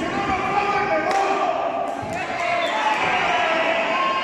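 Thuds of wrestlers hitting the ring canvas, a few sharp impacts ringing in a large hall, under raised, drawn-out voices.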